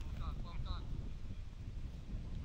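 A few short shouts from players across an outdoor football pitch, in the first part, over a steady low rumble of wind on the microphone.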